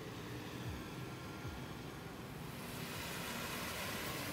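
Steady rushing noise of flowing floodwater, turning hissier and a little louder about two and a half seconds in.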